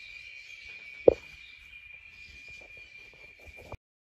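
Steady high-pitched insect trill with a single loud, short knock about a second in; the sound cuts off suddenly near the end.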